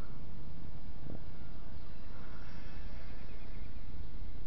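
Wind buffeting the microphone in a steady low rumble, with a brief thump about a second in. The faint, wavering whine of a small RC helicopter's motors comes through in the middle.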